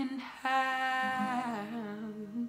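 A girl's voice humming one long drawn-out note, starting about half a second in and sliding down in pitch near the end.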